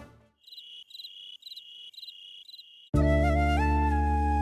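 Crickets chirping quietly in an even rhythm, about two chirps a second. About three seconds in, loud background music led by a flute cuts in.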